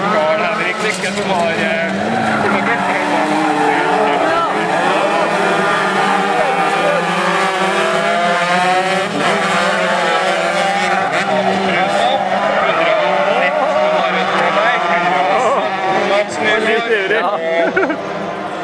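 Several 125cc crosskart engines racing together in a pack, their pitches overlapping and rising and falling as the drivers rev through the bends.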